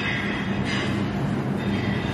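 Steady rumbling noise with a low hum underneath.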